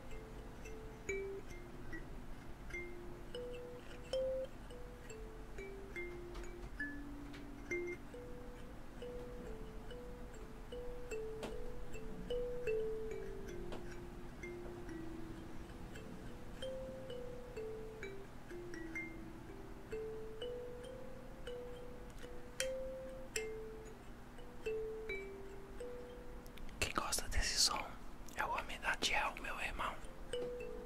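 A slow melody of soft bell-like mallet notes, one note at a time, about two a second, stepping up and down. Near the end comes a short loud rustling close to the microphone.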